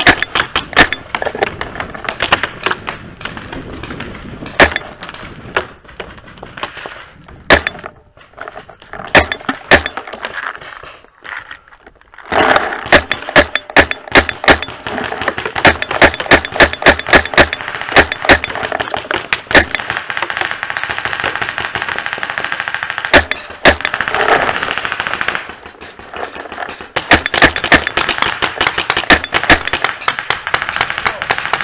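Paintball markers firing throughout, sharp pops singly and in rapid strings, thinning out about eight seconds in and coming back thick and fast about four seconds later.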